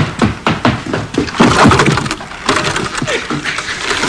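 Film soundtrack: a run of irregular thumps and knocks, footsteps clumping up wooden stairs, with short grunting voice sounds between them.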